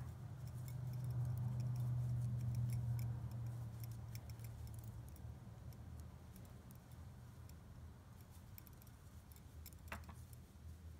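Thin metal double-pointed knitting needles clicking and tapping lightly against each other as stitches are knitted and purled, in small irregular ticks. A low steady hum lies underneath, louder in the first three seconds.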